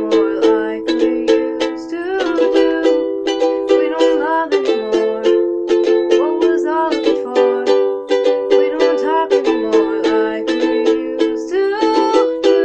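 Ukulele strummed in a steady rhythm, about four strums a second, repeating a chord pattern.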